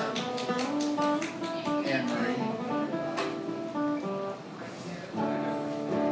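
Acoustic guitar played live, holding chords and changing between them, with a short drop in level about four and a half seconds in before it comes back stronger.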